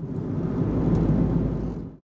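Low rumble of road and engine noise inside a moving car's cabin, swelling slightly and then cutting off just before the end.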